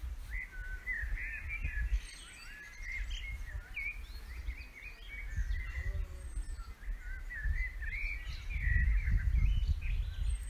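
Small birds twittering, a busy run of short chirping notes, over low wind rumble on the microphone that grows strongest near the end.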